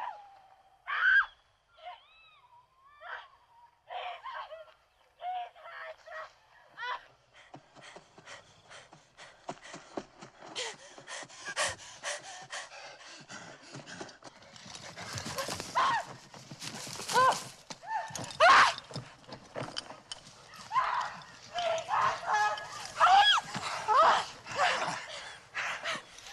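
Horses' hooves drumming in a fast, dense run that builds and gets louder from about eight seconds in, with short rising and falling cries over them. The first seconds hold only sparse short high calls.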